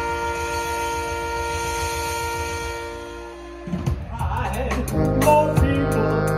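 Live band with trumpet and saxophone holding one long chord that fades away a little over three seconds in. The drum kit and band then start up again with sharp drum strokes and moving brass lines.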